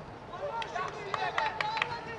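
Voices shouting and calling out during football play, starting about half a second in.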